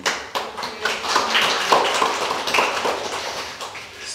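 Audience applauding: a dense patter of many hands clapping that starts straight away and thins out near the end.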